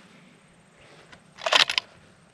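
A brief clatter of sharp clicks about one and a half seconds in, from the rifle and its bipod being handled and raised while the shooter adjusts his aim.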